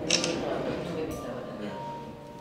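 Indistinct talking over quiet background music.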